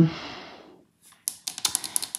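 Deck of oracle cards being shuffled in the hands: a quick run of papery clicks, about a dozen a second, starting a little past halfway.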